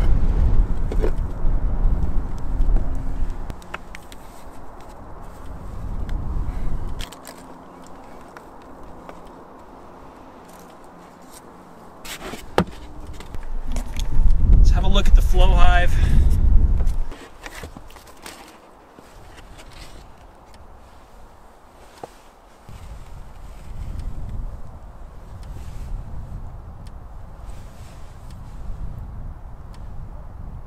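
Wind buffeting the microphone in gusts, with scattered clicks and knocks from handling the wooden hive boxes and lids. A brief wavering voice-like sound comes about halfway through.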